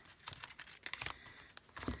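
Paper journaling cards and their clear plastic case rustling and clicking faintly as hands shift and sort them, with one soft knock near the end.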